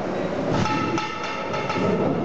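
A metallic ringing tone struck about six times in quick succession, starting about half a second in, over a hall's background murmur.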